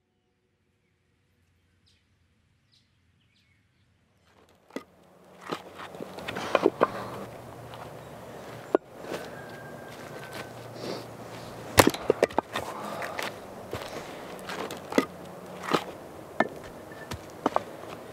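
Axe blows splitting logs: sharp woody cracks at irregular intervals, starting about four seconds in, over quiet woodland ambience with shuffling in dry leaves.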